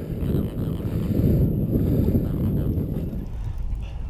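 Wind buffeting the microphone on an open boat: a steady low rush with no clear pitch.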